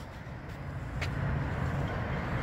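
Steady low rumble of outdoor background noise, with a faint click about a second in.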